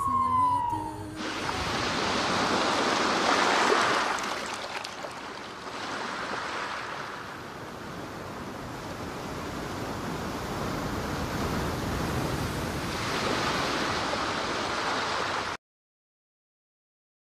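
An ambulance siren's falling wail cuts off about a second in, giving way to the rush of surf: waves breaking and washing in, swelling and easing in surges, until the sound stops suddenly near the end.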